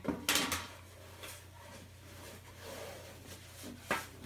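Two quick knocks about half a second in, then faint rustling and a light tap near the end: a storage box of craft dies being pulled out and handled.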